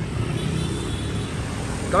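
Steady street traffic noise, with a motor scooter passing on the road.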